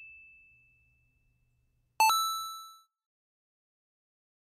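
A bright chime sound effect rings once about two seconds in and fades out within a second. The tail of an earlier ding fades away at the start.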